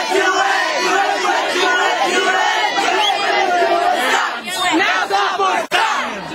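Crowd of young people shouting and cheering together, many voices overlapping, with a brief dropout near the end.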